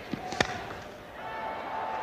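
Cricket bat striking the ball once, a single sharp crack about half a second in. Crowd noise then builds as the shot carries for six.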